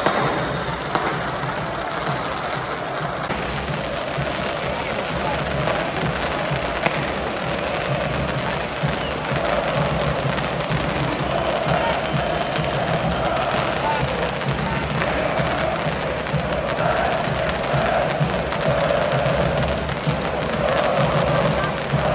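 Fireworks in a stadium stand crackling and popping without a break, under a large football crowd chanting in unison, the chant swelling about a third of the way in.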